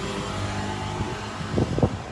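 A steady low mechanical hum, like a fan or motor running, with a couple of short sounds near the end.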